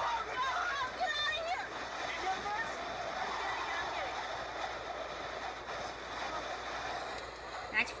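Steady rushing roar of storm wind and rain against a vehicle driving through a tornado, played from a storm-chase video through a tablet's small speaker. It follows a few brief voice sounds at the start.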